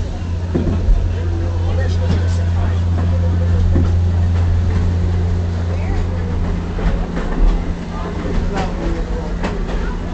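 Steady low rumble of a train, loudest in the middle, with voices talking in the background.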